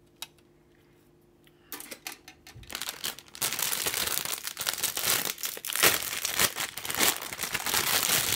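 Clear plastic bags holding the kit's plastic runners crinkling and crackling as they are handled. The crinkling begins about two seconds in and is loud and continuous through the rest.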